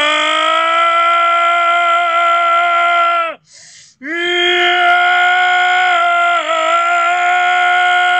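A man's voice holding long, loud, strained notes, sung out of anger: one note breaks off about three and a half seconds in, a quick breath follows, then a second note at about the same pitch that wavers briefly near the middle and holds to the end.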